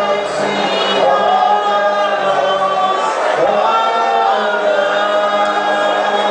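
A church congregation singing together in chorus, many voices holding long notes.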